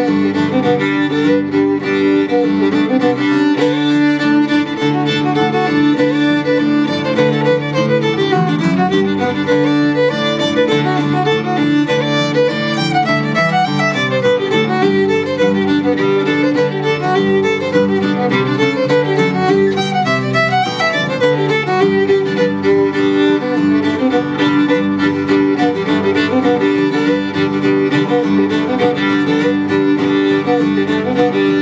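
Old-time fiddle tune played on fiddle with acoustic guitar backing. The bowed melody runs in quick notes over a steady drone note, with the strummed guitar underneath.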